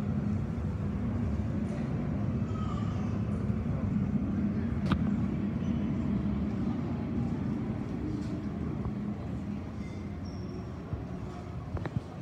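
Jet airliner's engines heard as a steady low rumble through the terminal glass during its landing roll-out, easing off over the last few seconds as it slows. A single sharp click about five seconds in.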